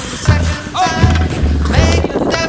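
Background music: a song with a steady, heavy bass beat and a melodic line over it.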